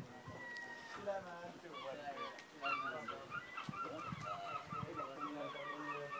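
A flock of birds calling, many short repeated calls that overlap, growing busier from about three seconds in.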